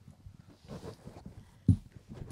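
Quiet room with faint, scattered low sounds and a single dull thump about three-quarters of the way through.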